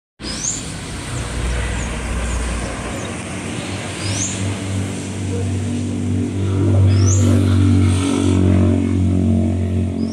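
A motor running with a low, steady hum that swells around seven seconds in, while a bird gives short rising chirps every second or two.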